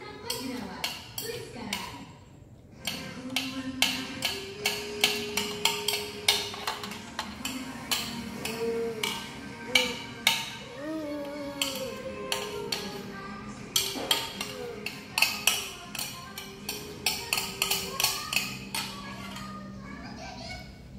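Music with a voice singing or speaking over it, and many sharp, irregular taps about two to four a second, loudest of all.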